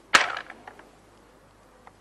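A wooden xiangqi (Chinese chess) piece set down hard on a wooden board with one sharp clack, followed by a few faint taps.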